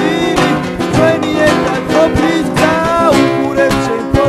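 Music: a song with plucked guitar and a melody line of held, bending notes over a steady rhythm.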